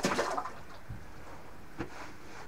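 A fish released back into an ice-fishing hole: a sudden splash at the start, then quieter water movement in the hole, with a short knock near the end.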